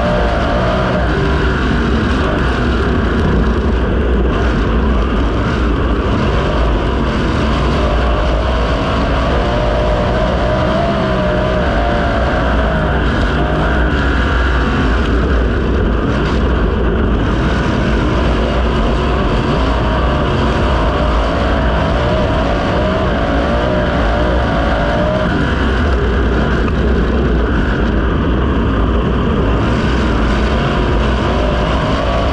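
A USAC 410 non-wing sprint car's 410-cubic-inch V8 running hard, heard from the cockpit. Its pitch wavers up and down through the laps.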